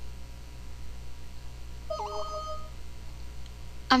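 A short Windows system alert chime about halfway through, a few steady tones lasting under a second, over a low hum. It is the warning sound of a pop-up error dialog saying the program could not set its shortcut keys.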